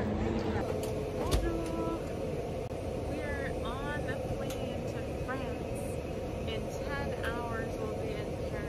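Steady cabin noise of an airliner heard from a passenger seat, a constant low drone, with a woman's voice speaking over it in short phrases.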